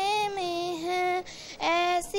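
A young girl singing an Urdu naat (devotional song about Madina) solo and unaccompanied, in long held notes, with a short breath just past halfway before the next phrase.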